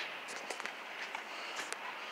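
Faint outdoor background noise with a few light, scattered ticks.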